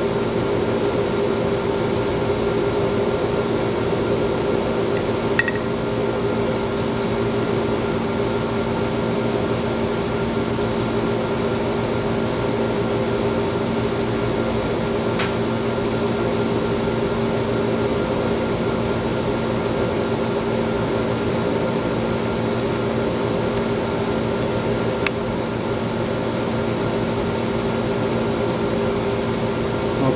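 Steady equipment hum of a running Oxford Plasmalab 800 Plus PECVD system with its vacuum pumping on, holding the chamber at 700 mTorr during an O2 + CF4 gas-flow step before RF power is applied. It is a constant drone of several low and mid tones under a high hiss, with a couple of faint clicks.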